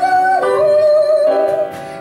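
A woman singing in Japanese while accompanying herself on an upright piano: a long held note steps down about half a second in and is sustained, then the voice breaks off near the end, leaving the piano.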